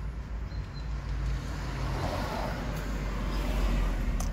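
Low, steady rumble of road traffic, swelling about two seconds in and again toward the end.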